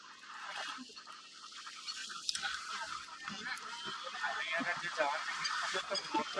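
A herd of wildebeest calling all at once: many short, overlapping grunting calls, growing denser about two seconds in.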